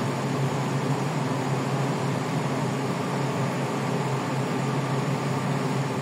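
Steady low machine hum with an even hiss over it, unchanging throughout.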